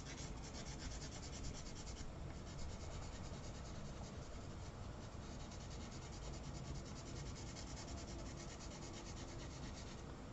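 Pastel pencil rubbing on paper in quick, even strokes, a faint steady scratching.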